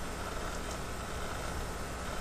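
Steady background hiss of room noise, with no distinct event.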